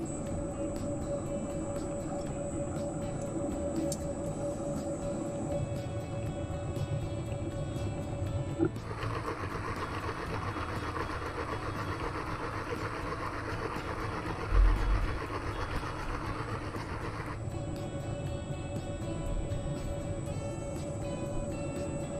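Horizontal milling machine running a gear cutter on its arbor, with a steady whine. From about nine to seventeen seconds in, a louder, rougher noise sounds as the cutter works through the gear blank, with one dull thump partway through.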